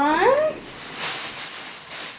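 Thin plastic shopping bag rustling and crinkling as a hand rummages in it.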